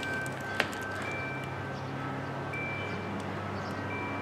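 Low steady background noise with a single sharp click about half a second in, and faint thin tones that come and go.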